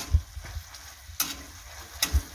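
A spatula stirring and turning boiled eggs in thick masala on a hot tawa, with a light sizzle under it. Sharp scrapes come right at the start and again just past a second in, along with soft knocks of the spatula on the pan.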